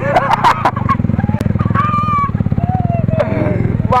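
Motorcycle engine running steadily at low speed, a constant even pulsing throughout, with a few short voice sounds over it.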